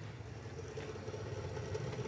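A steady low hum of a running engine, with a few faint clicks.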